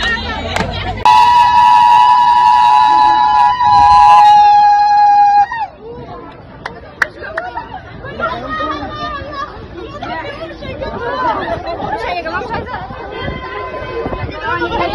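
A horn blares one loud, steady note for about four seconds, its pitch dipping slightly just before it cuts off. Excited voices and crowd chatter follow.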